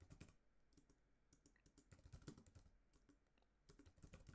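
Quiet typing on a computer keyboard: a quick, irregular run of keystrokes with a short pause a little before the end.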